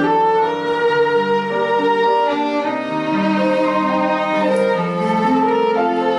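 Instrumental music of bowed strings led by a violin, playing a slow melody of long held notes over a lower moving line: the introduction to a song, before the voice comes in.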